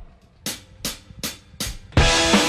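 Drummer's count-in: four sharp, evenly spaced clicks, about two and a half a second, then the full rock band comes in at the very end.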